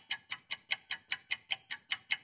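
Rapid, even ticking like a clock or timer, about five crisp ticks a second.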